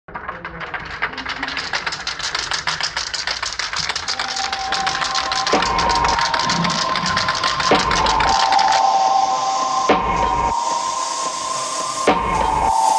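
Music with a low beat about every two seconds, over a fast rattle at the start. From about nine seconds in, an aerosol spray-paint can hisses steadily.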